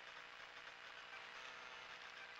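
Near silence: a faint, steady hiss with no distinct sound.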